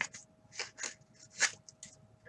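1985 Topps hockey trading cards sliding against each other as they are flipped through by hand: a handful of short dry swishes, the loudest about one and a half seconds in.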